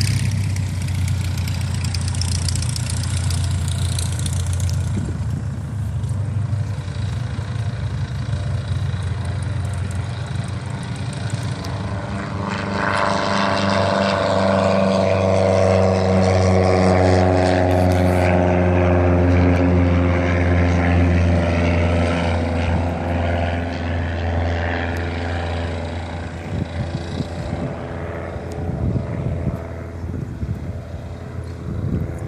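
Paramotor engine running steadily at low throttle. About a third of the way in, a louder engine sound swells with slowly falling pitch, then eases off after about ten seconds.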